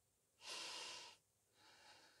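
A woman breathing out loud while she holds a yoga balance pose: one fuller breath about half a second in, then a softer one near the end.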